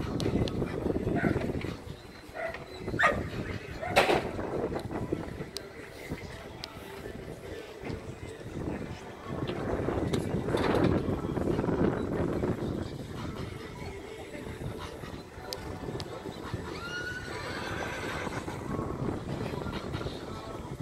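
Show-jumping horse moving around a sand arena, with a horse neighing and background voices. Two sharp knocks stand out about three and four seconds in.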